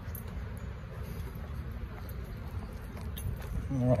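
Steady outdoor background noise, a low rumble with an even hiss, with a few faint clicks.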